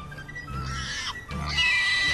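Piglets squealing twice, over background music.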